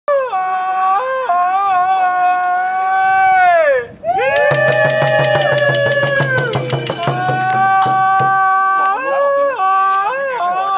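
Men's long drawn-out procession calls, each held on one pitch and falling away at its end, with a short break about four seconds in. From then until about eight and a half seconds a Thai long drum (klong yao) and small hand cymbals (ching) beat a fast even rhythm under the calls.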